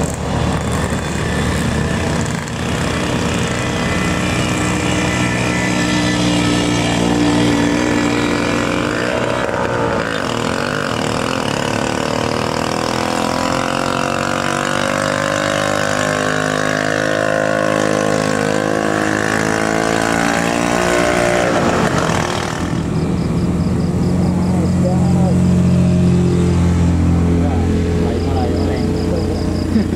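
Vintage two-stroke Vespa scooter engines pulling up a steep hill under load. The engine pitch rises through the middle, then a different, somewhat louder steady engine note takes over in the last few seconds as more bikes come up.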